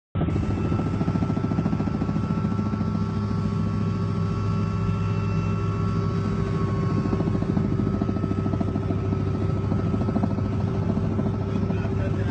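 Steady engine and rotor noise heard inside a helicopter cabin in flight, a loud even drone with a fast rapid pulsing.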